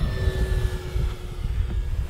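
Electric motor and propeller of an FMS Zero 1100mm RC warbird in flight, a quiet whine that drops slightly in pitch as the plane passes and climbs away. Under it runs a steady low rumble.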